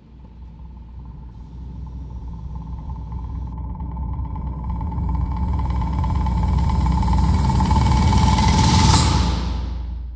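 Horror-film sound-design riser: a low rumbling drone with a steady high tone that swells louder for about nine seconds, peaks sharply, then falls away near the end.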